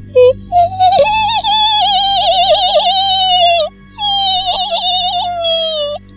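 A langsuir's wail (mengilai), performed as a horror sound effect: a high, thin, wavering voice held in two long notes, the first about three seconds and the second about two, each sagging a little in pitch at its end.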